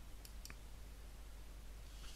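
Two faint, sharp computer clicks close together, advancing the presentation to the next slide, over a steady low hum and faint room hiss.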